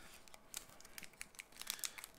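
Faint, quick crackles and clicks of a hockey card pack's foil wrapper crinkling in the hands as it is worked open, starting about half a second in.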